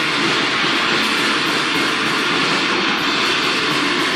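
Metal band playing live: a loud, dense, unbroken wall of distorted guitars and drums, on a rough, phone-quality recording that has been cleaned up.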